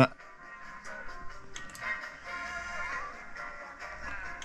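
A song playing back at low level through the hi-fi system, resumed from a phone streaming over Bluetooth into a DAC and amplifier for a listening comparison.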